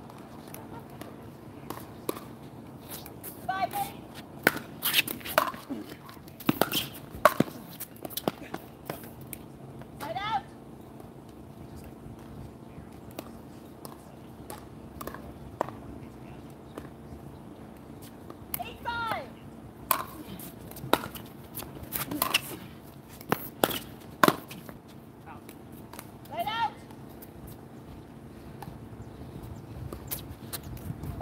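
Pickleball paddles hitting a hard plastic ball in two short rallies, sharp pops about a second apart.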